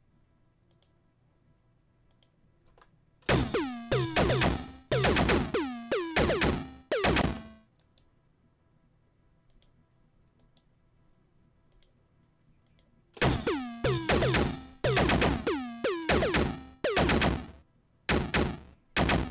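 Electronic synth pattern sequenced on a Maschine MK3: a fast run of short, chiptune-like hits, each dropping quickly in pitch, played for about four seconds, then a pause with faint clicks, then starting again about thirteen seconds in.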